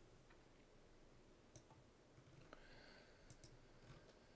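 Near silence: quiet room tone with a few faint clicks in the second half.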